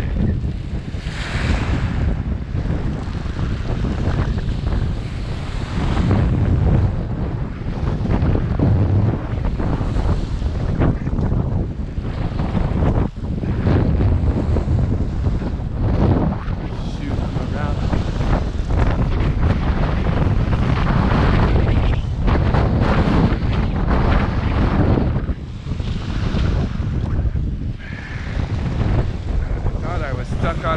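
Strong, gusty wind of about 25 miles per hour buffeting the microphone, rising and falling every few seconds, with small waves washing onto a cobble shore.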